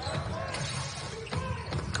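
Quiet court sound from a televised basketball game: faint ball bounces and player noise over a low, steady background.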